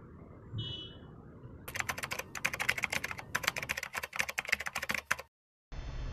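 Rapid, irregular clicking like typing on a keyboard, starting nearly two seconds in and stopping abruptly a little past five seconds.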